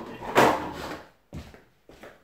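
Off-camera kitchen handling sounds while a cloth is fetched: a short sliding scrape about half a second in, then two light knocks.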